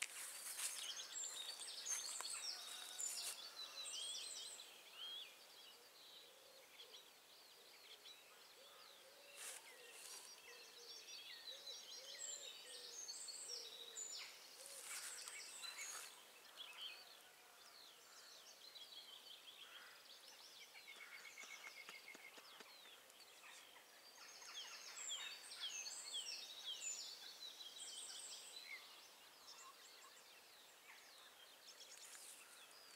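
Faint dawn chorus of several songbirds singing at once: overlapping whistled phrases, rapid trills and chirps, busiest at the start, in the middle and again near the end.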